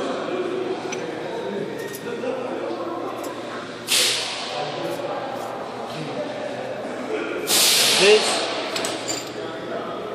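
Jam nut spun by hand onto a heavy truck's axle spindle, with light metal clinks over steady shop background noise. Two sudden loud hisses cut through, one about four seconds in and a longer one near eight seconds, each fading out.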